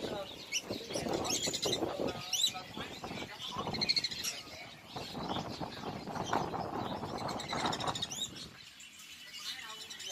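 Many caged songbirds chirping and calling, short high sweeping notes scattered throughout, over a murmur of indistinct voices that fades near the end.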